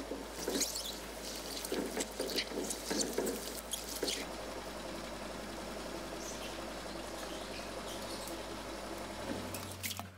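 Mistletoe sprigs rustling and crackling as they are handled, with irregular crackles for about four seconds. After that only a steady faint hum remains.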